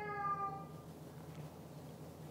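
A cat meowing: one drawn-out, slightly falling call that fades out under a second in. A faint low steady hum is left underneath.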